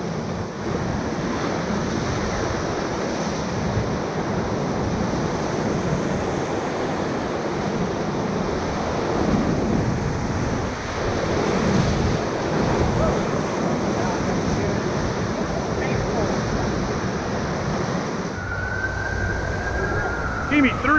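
Whitewater rapids rushing and churning around a river raft, a dense steady roar of water with wind buffeting the camera microphone. A thin high tone comes in near the end.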